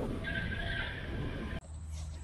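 Wind rushing over a camera mounted on a hang glider in flight on a low landing approach. A high whistling hiss rides on the wind for over a second, and the sound cuts off abruptly near the end.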